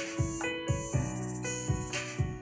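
Electric keyboard playing sustained R&B chords over a steady drum beat with kick drum and hi-hat, looping an A major, B minor, F-sharp minor, D major progression.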